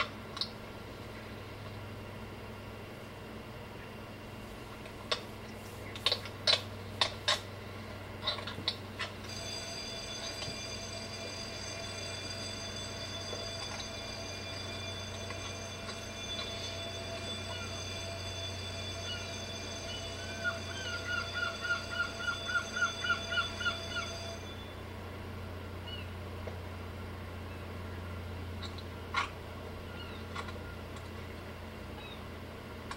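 Electric school bell ringing steadily for about fifteen seconds, starting about nine seconds in and cutting off suddenly. Near its end a bird gives a fast run of about a dozen short calls. A few sharp clicks and knocks come before the bell starts.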